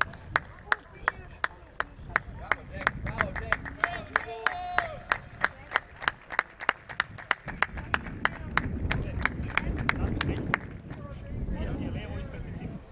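Steady rhythmic hand clapping, about three claps a second, that stops near the end, with a few voices in the background.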